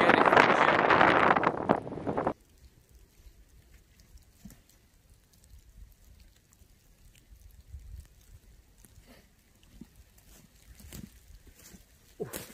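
Strong wind buffeting the microphone, cutting off abruptly about two seconds in. Then near silence: a faint low wind rumble with a few soft footsteps in thin snow.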